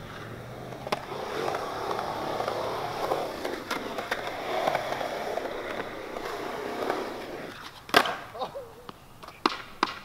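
Skateboard wheels rolling over concrete. About eight seconds in comes one sharp clack of the board, followed by a few lighter knocks.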